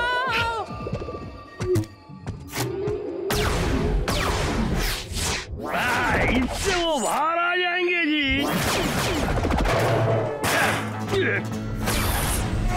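Cartoon action soundtrack: background music mixed with whooshing sound effects and brief high, squeaky creature cries.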